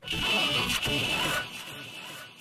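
A recorded voice played back through iZotope VocalSynth's Pitter Patter preset, which turns it into a synthetic, buzzing vocal sound with layered tones. It cuts in sharply and is loud for about a second and a half, then trails off more quietly.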